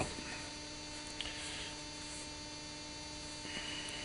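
Steady electrical mains hum, with one faint click about a second in.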